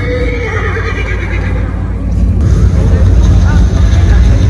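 Show soundtrack: a deep steady rumble, with wavering cries laid over it near the start and again near the end, growing louder a little past halfway.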